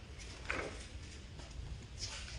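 Quiet background hum of a large store, with one soft knock about half a second in.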